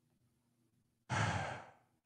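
A man's single sigh, a breath out into a close microphone, starting sharply about a second in and fading away over about half a second.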